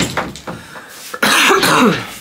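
A woman with a cold coughing into her hand, the loudest burst coming about a second in and lasting most of a second.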